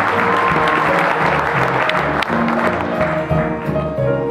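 Audience applauding mid-tune while a school jazz band keeps playing, with bass, piano and guitar carrying on beneath the clapping. The applause dies away near the end, as for the close of a trumpet solo.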